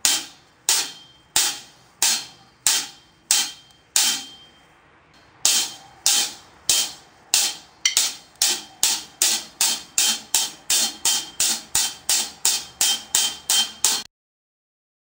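Single drumstick strokes on a drum, played while the sticks are twirled gospel-style between hits. A stroke comes about every two-thirds of a second, with a short pause a little after four seconds, then the strokes speed up to about three a second for the second half. Each hit has a short ring.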